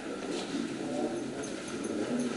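Indistinct voices of several people talking as they move past, over room noise.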